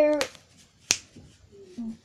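The end of a boy's spoken word, then a single sharp click about a second in.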